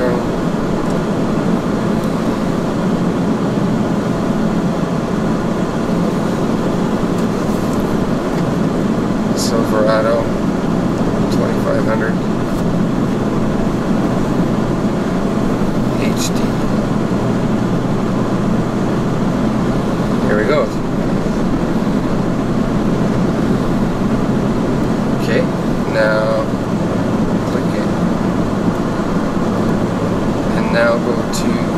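Steady road and engine noise inside the cabin of a moving 2009 Chevy, with a low hum underneath.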